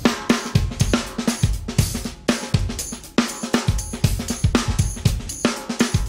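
Drum kit from the original jazz-fusion recording playing a busy groove of snare, kick drum, hi-hat and cymbal strokes, with the bass line dropped out.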